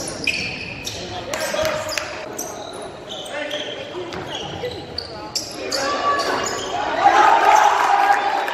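Basketball game in a gym: a basketball bouncing on the hardwood floor, short high-pitched sneaker squeaks, and voices calling out, loudest near the end.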